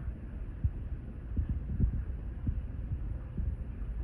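Low rumble on the microphone with a few soft, irregular low thumps, typical of wind buffeting or handling noise on a handheld phone.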